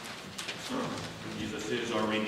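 Indistinct, low-level talking starting about half a second in, with a few light clicks and rustles before it.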